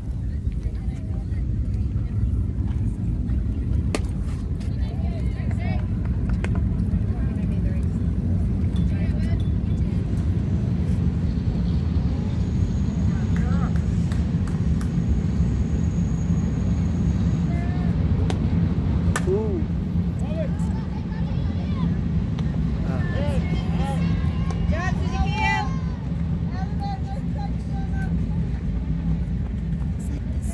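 A steady low rumble runs under distant voices calling out from players and spectators across a ball field, with a sharp knock about four seconds in and another just before the halfway mark.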